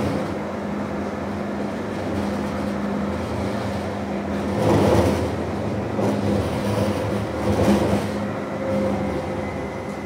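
A tram heard from inside as it rides along: a steady rolling rumble with a low motor hum, swelling louder about halfway through and again near the eight-second mark.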